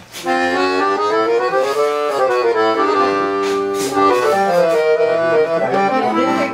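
Piano accordion playing a slow series of held notes on a register that sounds an open chord without a third from each single key: the note with its octave-and-a-half and double octave.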